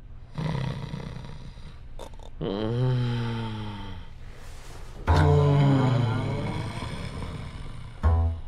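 A man snoring in his sleep: three long snores, the second sliding down in pitch.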